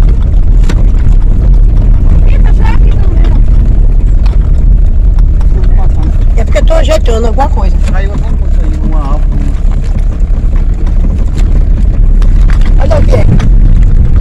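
Loud, steady low rumble of a car driving, heard from inside the cabin as road and engine noise, with brief muffled voices now and then.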